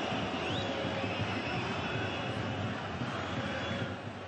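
Steady crowd noise in a football stadium, an even wash of many voices with no single sound standing out.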